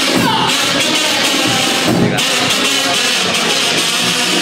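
Cádiz carnival comparsa playing an instrumental introduction: a row of kazoos (pitos) buzzing a melody together over guitar and drums.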